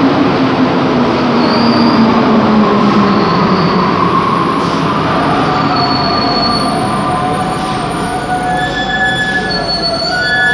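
Santiago Metro NS-93 rubber-tyred train pulling into a station and slowing to a stop. A motor whine drops in pitch over the first few seconds under the rumble of the train, then several steady high squealing tones come in about halfway as it brakes.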